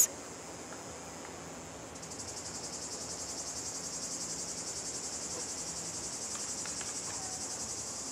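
A steady, high-pitched insect chorus. About two seconds in, a faster pulsing trill joins it, rapid and even, and the sound grows slightly louder.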